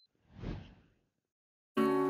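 A soft whoosh transition sound effect that swells and fades within about half a second. Near the end, strummed acoustic guitar music comes in.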